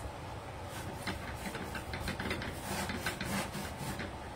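A paintbrush spreading clear primer over bare plywood: a quick series of short brush strokes, several a second, over a steady low hum.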